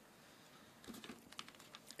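Near silence: room tone, with a few faint clicks and taps in the second half.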